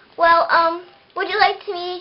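A young girl's voice in high, sing-song phrases, some notes held at a steady pitch.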